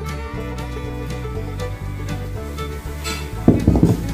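Background music with steady held notes over a low bass line, and a brief loud burst of noise near the end.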